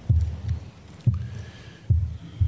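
Low, dull thumps, three in about two seconds, from the clear acrylic lectern being knocked as the open Bible is handled on it.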